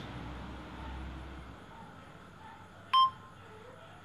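A single short electronic beep about three seconds in, from a tablet digital clapperboard marking the sync point of the take, over faint room hum.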